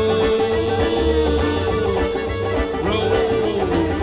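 Live folk-rock band playing an instrumental passage: a fiddle holds a long note with slides in pitch over bass guitar and hand drum.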